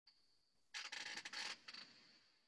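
Faint scratching noises lasting about a second, starting a little under a second in, over a faint steady high-pitched whine.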